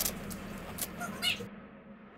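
Plastic Duplo bricks clicking and knocking as small hands handle them, with a brief high-pitched rising squeal a little past a second in.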